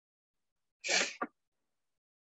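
A single sneeze about a second in: a short, sharp, hissy burst with a brief catch right after it.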